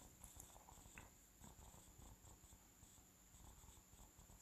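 Near silence: faint room tone with a steady high hiss and two faint ticks.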